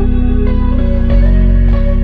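Background music: a gentle instrumental track with plucked guitar over sustained bass notes.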